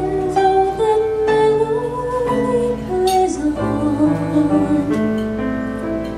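A female vocalist singing a slow Broadway ballad, holding long notes, over live instrumental accompaniment that sounds a new chord about once a second.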